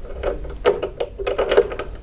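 Light metallic clicks and scrapes of a single-edge steel blade being slid back to its stop in the aluminium blade holder of a Keencut flexo plate cutter: an irregular run of small ticks, thickest in the second half.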